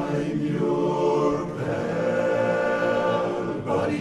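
Men's barbershop chorus singing a cappella in close harmony, all voices entering together after a short silence and holding full chords, with a brief break just before the end.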